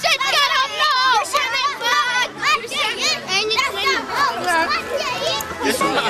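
A group of children's high voices, shouting and chattering over one another.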